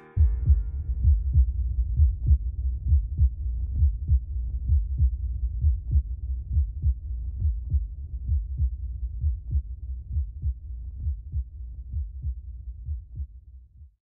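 Heartbeat sound effect: a steady rhythm of low beats, about two to three a second, over a low rumble, fading out near the end.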